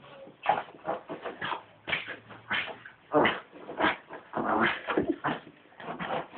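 Lhasa Apso dog rubbing itself along the carpet after a bath: a rapid, irregular series of short scuffing noises, about two or three a second.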